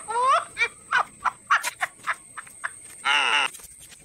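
Frogs calling: a quick series of rising, pitched chirps at the start and a fast run of falling calls a little after three seconds in, with scattered sharp clicks in between.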